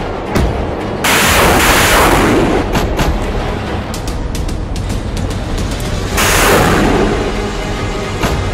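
Two loud artillery blasts over background music: the first comes suddenly about a second in and dies away over a second or so, the second about six seconds in.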